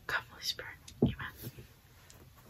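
A young woman whispering a prayer under her breath: a few short whispered phrases, one right at the start and another about a second in.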